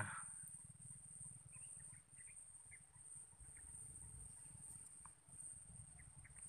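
Faint outdoor ambience: a steady high-pitched insect trill with a few short faint bird chirps, over a low rumble.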